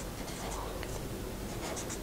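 Felt-tip marker writing a number on paper, faint.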